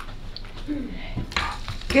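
Light clicks and knocks of handling at a podium microphone, over low room noise, with a short murmur about a second in; a woman starts to speak at the very end.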